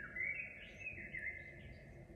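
Faint, high-pitched chirping, most like a bird: a thin, wavering call held steady with small upward flicks.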